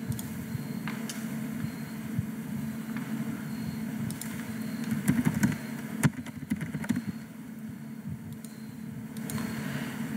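Steady low hum of running equipment, with scattered short clicks of a computer mouse and keyboard as a login is typed in. One sharper click comes about six seconds in.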